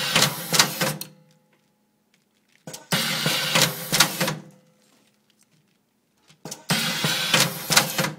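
XL-8 automatic cable-tie machine running three tie cycles, each about a second and a half of mechanical whirring and clicking as it feeds a plastic tie around the 6-inch ring and cinches it round a cable coil. There are about two seconds of silence between cycles.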